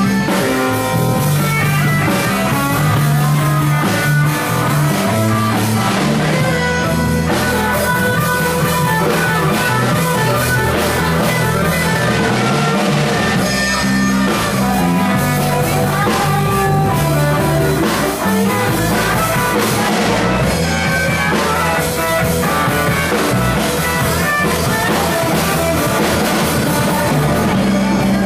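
A live band playing loud rock music with electric guitar, bass and drum kit, without a break.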